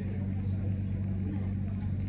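Steady low hum inside a standing Siemens Combino Supra low-floor tram, from its running on-board equipment, with the doors closed.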